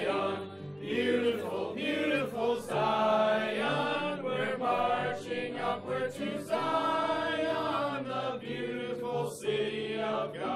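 Choral music playing: several voices singing together over low, sustained bass notes.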